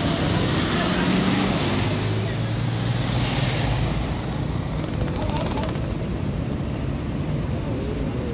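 A Toyota pickup's engine running as it drives through road floodwater, its wheels throwing up spray with a loud hiss of splashing water. The splashing fades after about three to four seconds, leaving a steady rush of moving floodwater.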